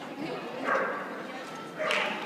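A dog barking twice, two short sharp barks about a second apart, over the background chatter of people.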